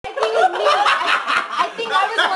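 A group of people laughing and chuckling amid overlapping talk.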